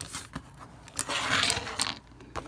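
Small hard plastic toy parts handled on a wooden tabletop: a few sharp clicks and taps, then about a second of scraping and rustling with more clicks near the end.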